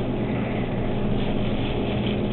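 Steady low hum with an even hiss behind it, with a single click right at the start.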